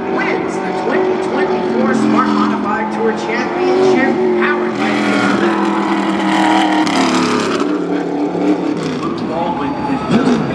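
Modified race car's V8 engine running at low speed, its pitch stepping up and down, swelling into a louder rush for a couple of seconds past the middle as the car passes close.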